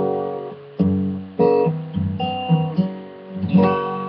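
Fingerpicked steel-string acoustic guitar playing a slow closing phrase. The fretting pinky is on the third fret of the high E string. A ringing chord fades, then about five plucked notes and chord tones follow one after another, each left to ring out.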